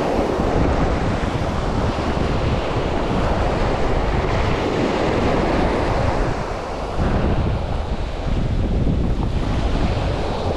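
Surf breaking and washing up a sandy beach, with wind buffeting the microphone.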